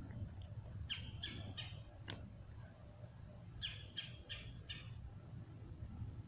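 Crickets trilling in a steady high drone, with a bird giving two quick series of four short calls, about a second in and again near four seconds. A single sharp click comes a little after two seconds.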